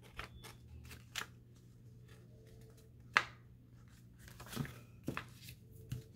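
Paper envelopes being handled, folded and pressed flat on a hard countertop: a few scattered light paper rustles and taps, the sharpest about three seconds in, over a faint steady hum.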